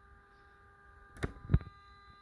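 Two sharp knocks about a third of a second apart, a little over a second in, the second louder and deeper, over a faint steady hum.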